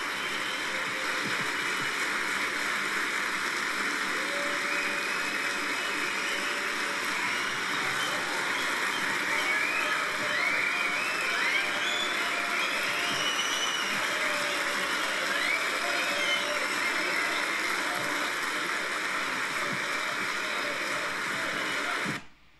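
Large crowd applauding and cheering steadily, with a few whistles and shouts in the middle; it cuts off suddenly at the end.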